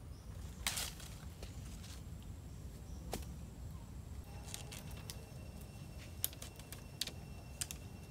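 Scattered light clicks and knocks of thin wooden poles being handled and pushed into sandy ground, over a low rumble. A faint steady high tone comes in about halfway.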